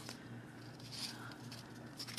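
Faint rustle of card stock being handled and pressed between the fingers, with a soft brief scrape about a second in.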